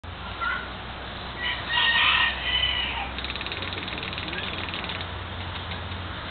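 Birds calling: a short call near the start, then a loud drawn-out call lasting over a second, followed by a fast rattling trill.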